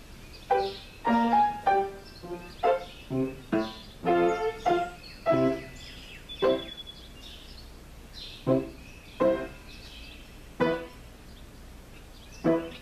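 Solo piano improvisation: single notes and chords struck one at a time and left to ring. The playing runs at about two strikes a second at first, then thins out after about six seconds, with gaps of a second or more between chords.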